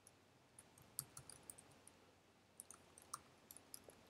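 Faint, sparse keystrokes on a computer keyboard: a few clicks about a second in and a few more in the last second and a half, with near silence between.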